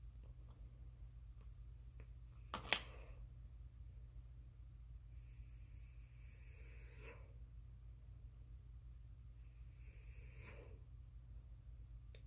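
Faint breathing close to the microphone, two breaths: a longer one about five seconds in and a shorter one near ten seconds. A single sharp click comes about three seconds in, over a steady low hum.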